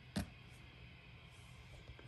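Faint room tone with one short click just after the start.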